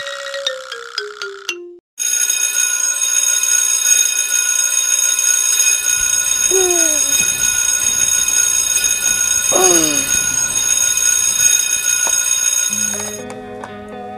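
An alarm clock's bell ringing loudly and without a break for about eleven seconds, then cut off near the end as a hand switches it off. Before it, a short jingle of descending chime notes; during it, two brief falling sounds; after it, music.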